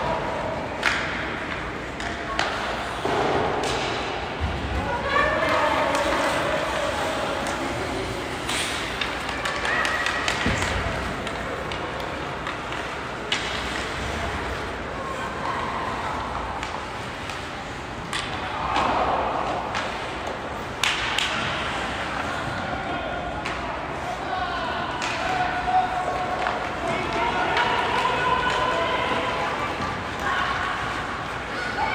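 Live ice hockey play heard from the stands of a large, mostly empty rink: indistinct shouting voices come and go, broken by scattered sharp knocks of sticks and puck against the ice and boards.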